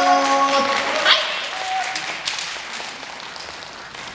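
The last held notes of a Japanese folk music ensemble die away within the first second. Audience applause follows and gradually fades.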